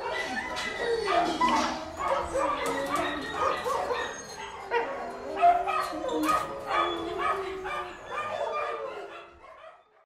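A dog whining and yipping: a run of short, high cries that slide up and down in pitch, fading out near the end.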